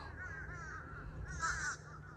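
Birds calling in the background: a quick series of short calls, loudest about a second and a half in.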